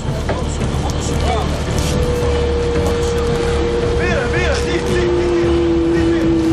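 Fishing boat's engine running steadily, with a machine whine that sets in about two seconds in and a second, lower whine joining near the end. A few brief shouts from the crew hauling in the net.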